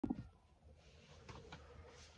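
Mostly quiet room tone, with a short sound right at the start and a few faint rustles of a person moving into place.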